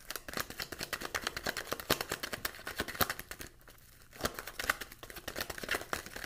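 A deck of tarot cards being shuffled and handled by hand: dense, irregular flicking and rustling of card stock, with a brief lull about three and a half seconds in.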